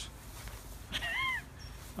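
One short, high-pitched call about a second in, its pitch rising and then falling, over a low steady rumble.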